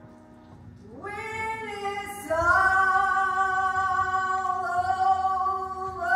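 A solo woman's voice singing long held notes in a large room. She comes in about a second in and grows louder a second later, holding a sustained note to the end with a slight dip in pitch midway.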